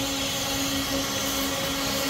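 A steady mechanical hum: one constant low tone over an even background noise.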